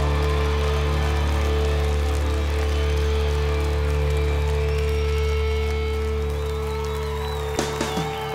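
Live rock band music: a low bass note and a guitar chord held steady and ringing under a haze of cymbals and crowd noise, with a click near the end as the lowest note drops away.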